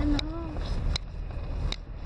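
Car driving slowly over a rough, unpaved mountain track, heard from inside the cabin: a steady low rumble of engine and road noise, with three sharp knocks spread through the two seconds as the vehicle jolts over the uneven ground.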